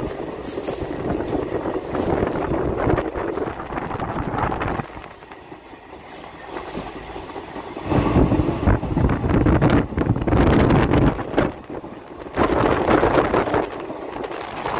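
Passenger train running along the track, heard from an open coach doorway: wheel-and-rail running noise mixed with wind rushing past the microphone. It is loud at first, eases off for a few seconds near the middle, then surges back.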